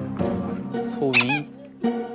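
Background music with steady held notes. About a second in comes one short, high, sliding squeak-like vocal sound.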